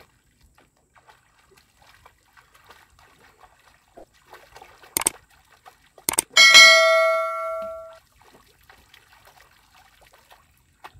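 Subscribe-button sound effect: a sharp mouse click about five seconds in, a quick double click a second later, then a bright notification bell chime that rings and fades out over about a second and a half. Faint water splashing from swimming sits underneath.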